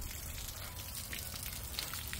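Garden-hose water running through a stainless steel coil immersion wort chiller and splashing out of its outlet onto the ground: a steady rush of water as the chiller is flushed clean after the wort has gone through it.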